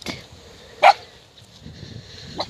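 A dog barks once, a short, sharp bark just under a second in.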